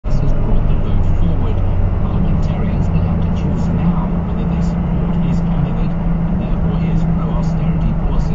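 A car's engine and road noise heard from inside the cabin as the car gains speed: a steady low drone whose pitch steps up about two seconds in.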